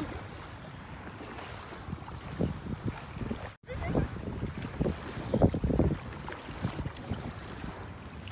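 Wind noise on the microphone over open sea water, with short low gusts or splashes bunched in the middle and second half and a brief cut-out just past the middle.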